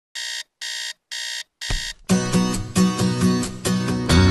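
Digital alarm clock beeping four times, about two short high beeps a second, the last one cut off by a low thump. Music with guitar starts about two seconds in.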